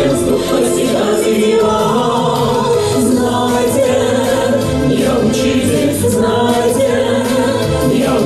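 A man and women singing a song together into handheld microphones, amplified through the hall's sound system over musical accompaniment. The music is steady and continuous.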